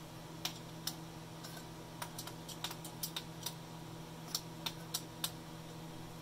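Faint, irregular light clicks and taps of hands and a tool working a metal frame clamp and its bolts on a recumbent trike's boom, as the clamp is brought nearly tight and levelled.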